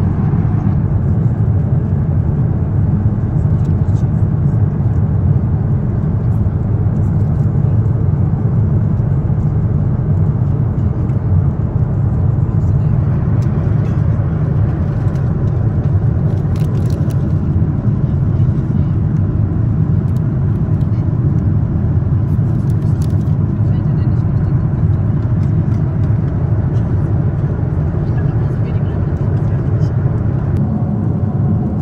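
Steady cabin noise of a Boeing 747-8 airliner in flight, heard from an economy seat: a constant low rumble of engines and airflow. A few faint light rustles or clicks of handled snack packaging sit on top.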